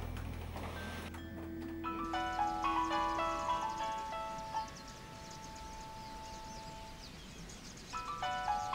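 Mobile phone ringtone: a short electronic melody of stepped notes starts about two seconds in, settles on a long held note, and starts over near the end. Low background music runs under the first second.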